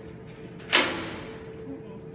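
PVC-pipe enrichment puzzle knocking against the steel mesh of an enclosure door as a chimpanzee works it: one sharp knock about three-quarters of a second in, fading over about half a second.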